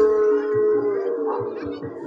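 A singer holds one long note over gamelan accompaniment, bending it down and ending it about a second in. Quieter gamelan notes follow.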